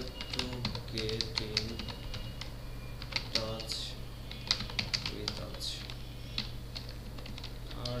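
Computer keyboard being typed on: irregular key clicks, some in quick runs and some spaced apart, over a steady low hum.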